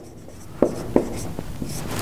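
Writing by hand: the writing tool taps and scratches across the surface in a few short strokes, with about four sharp ticks starting about half a second in.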